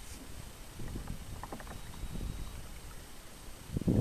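Kayak paddle strokes in calm water: the blades dipping and pulling, with drips and water lapping at the hull, louder near the end.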